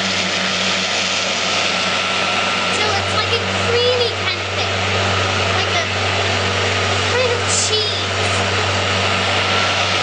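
Countertop blender running steadily at speed, whirling liquid egg whites and yolks into an omelette mixture: an even motor hum under a whirring rush of liquid.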